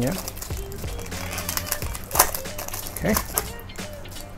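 Foil wrapper of a basketball trading-card pack crinkling and tearing as it is pulled open by hand, with one sharp crackle about two seconds in.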